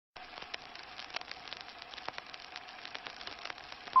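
Old-film crackle and irregular clicks over a faint steady hum, ending in a short high beep near the end: the sync beep on the '2' of a film-leader countdown.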